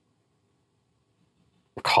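Near silence: room tone, then a man starts speaking near the end.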